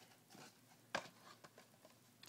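Near silence, with a few faint clicks and small handling noises; the sharpest click comes about a second in.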